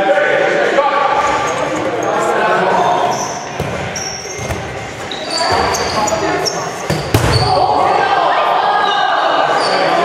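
Dodgeball play in a gymnasium: players shouting, rubber balls thudding off bodies and the floor, and sneakers squeaking on the gym floor. The sound echoes in the large hall, with the heaviest ball impacts about four seconds in and again about seven seconds in.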